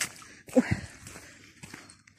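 Footsteps of a person walking on asphalt, with a short wordless voice sound from the walker, falling in pitch, about half a second in.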